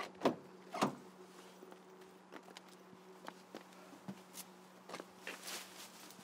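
A car door being opened: two sharp clacks of the handle and latch within the first second, then softer rustling and small knocks, over a low steady hum.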